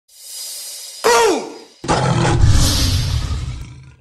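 Intro sound effect: a rising whoosh, a sudden loud sound falling in pitch about a second in, then a loud tiger roar that rumbles for about two seconds and fades out.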